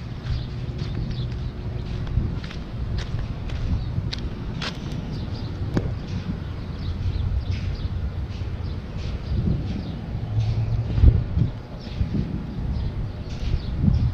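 Wind rumbling on the microphone, with scattered clicks and knocks of footsteps on a dirt and gravel lot.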